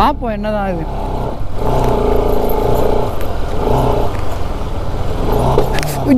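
Bajaj Pulsar RS200's single-cylinder engine running at low revs, the note rising and falling a little, as the motorcycle crawls over a rocky dirt trail.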